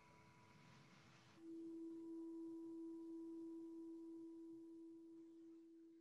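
A meditation bell ringing out in one faint, steady tone that grows louder about a second and a half in and then slowly fades, marking the close of the meditation.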